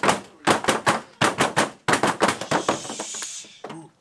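A group in a small room clapping and knocking in a fast, uneven rhythm of sharp cracks, several a second, with a short hiss about three seconds in. This is the build-up of a team celebration chant.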